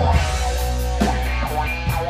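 Live rock band playing: electric guitar, electric bass and drum kit together.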